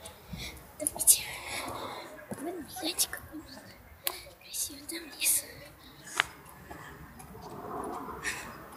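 A girl whispering or speaking very softly, with sharp hissing 's' and 'sh' sounds standing out. Two sharp clicks, about four and six seconds in.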